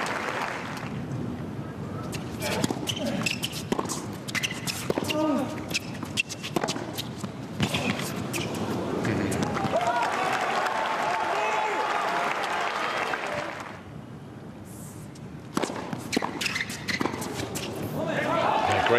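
Tennis on a hard court: sharp racket strikes and ball bounces through a rally. Crowd applause swells and holds for a few seconds after the point. After a brief lull, the ball is bounced again and served near the end.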